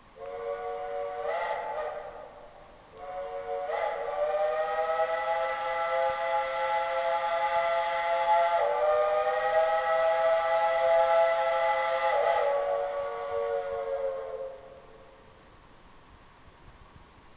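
Steam locomotive whistle sounding several notes at once: a short blast of about two seconds, then a long blast of about eleven seconds, its chord shifting slightly partway through.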